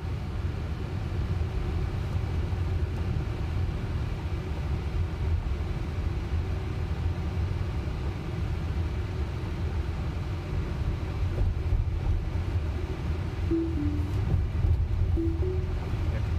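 Road and tyre noise inside the cabin of a Tesla electric car driving slowly at about 20 mph: a steady low rumble, with a few brief faint tones near the end.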